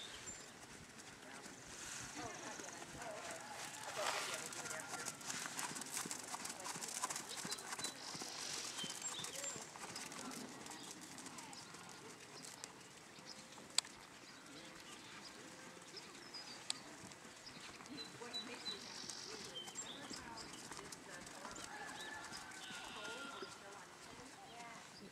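Hoofbeats of a ridden horse moving over a sand arena, a steady run of soft clip-clops, with a single sharp click about two-thirds of the way through.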